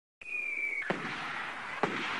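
Fireworks: a rocket whistle that falls slightly in pitch, then a bang about a second in and another near the end, each followed by crackling.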